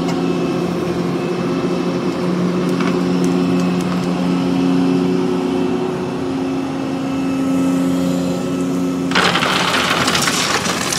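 Volvo crawler excavator's diesel engine running steadily as the machine swings its loaded bucket. About nine seconds in, gravel pours out of the bucket with a sudden loud rattling rush and spills down into the pool forms.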